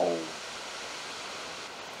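Steady rushing of sea surf and wind, an even hiss with no single wave standing out.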